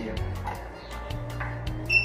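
Laundry dryer's card reader giving one short high beep near the end as a payment card is tapped on it, over soft background music.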